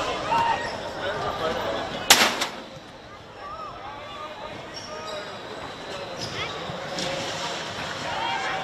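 A football struck hard once, a single sharp thud about two seconds in, with players' short shouts around it on the pitch.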